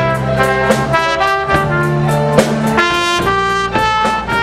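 A live band playing an instrumental passage: a trumpet carries the melody in long held notes over a bass line and a steady drum beat.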